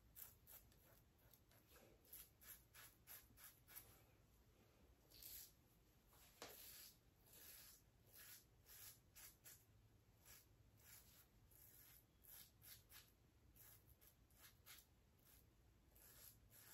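Faint, short rasping strokes of a stainless steel Muhle Rocca safety razor cutting stubble through shaving lather on an against-the-grain pass, coming a few at a time with pauses between.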